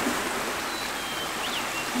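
Steady rushing of a running stream. A few faint, thin, high whistled notes come in the middle.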